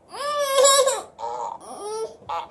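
Electronic fart sound effect from the figure of a 'who farted' party game, set off by a hidden press on a player's squeeze bulb: a pitched, wavering blast about a second long, then a shorter, quieter one that rises at the end.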